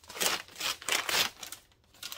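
Tan tissue-paper wrapping being torn and crumpled off a book, rustling in several bursts that fade out about a second and a half in.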